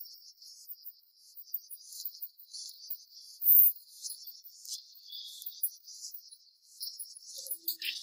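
Insects chirping in short, high-pitched, irregular pulses, with one louder burst about three and a half seconds in.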